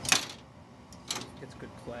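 Two brief scraping clunks about a second apart from the tractor's home-made clutch pulley and idler arm being moved by hand.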